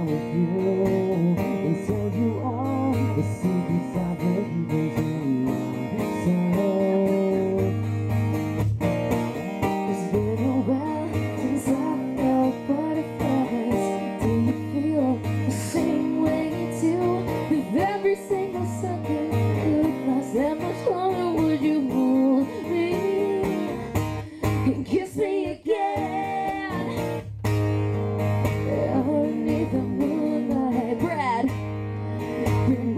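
Live acoustic song: a steel-string acoustic guitar strummed steadily, with a woman singing the melody over it.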